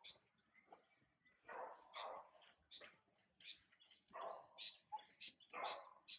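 A few short animal calls, spaced about a second or more apart, with small high chirps between them.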